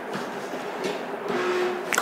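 Sheets of paper rustling as they are handled, with a couple of short swishes.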